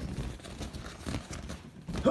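Irregular rubbing, rustling and bumping close to the microphone: handling noise as the phone moves and a latex balloon brushes against it.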